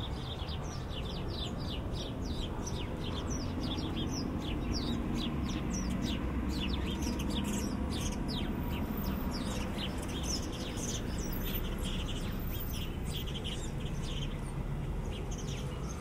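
Small songbirds chirping in a quick, continuous stream of short, high, falling notes, several birds at once. Under them is a steady low city rumble.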